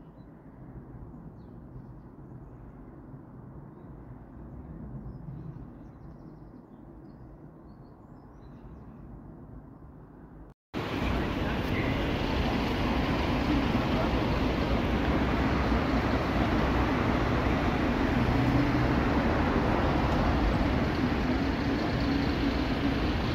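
Outdoor street ambience with no music. For about ten seconds there is a quiet, muffled hum of the surroundings; then, after a sudden cut, much louder city street noise of passing traffic runs on steadily.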